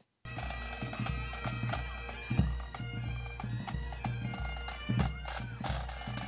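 Pipe band playing on the march: bagpipes sounding a steady drone under the chanter's melody, with bass and snare drums beating a regular time. It cuts in suddenly just after the start.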